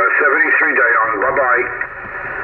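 Single-sideband voice received on the 15-metre band through the speaker of a Yaesu FT-857D transceiver: another station's voice, narrow and tinny and hard to make out, under steady band hiss. The signal fades a little near the end, consistent with the fading the operators complained of.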